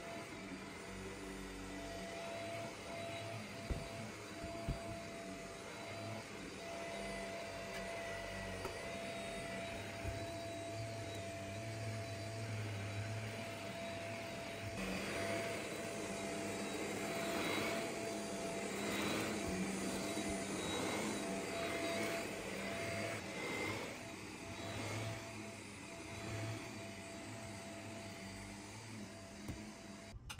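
Upright vacuum cleaner running on carpet with a steady motor whine, pushed back and forth so that it swells and falls in repeated strokes, loudest in the middle stretch.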